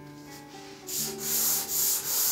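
Hand sanding a mahogany tabletop with a sanding block, in rhythmic back-and-forth strokes. The strokes start about a second in and come two to three times a second, over quiet guitar music.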